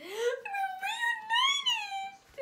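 A woman's voice singing a long, high, wordless note. It slides up at the start, then bends up and down like a vocal run.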